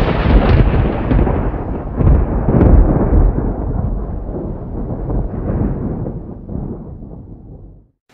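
Thunder sound effect: a loud rolling rumble with further swells about two and three seconds in, dying away gradually and cutting off just before the end.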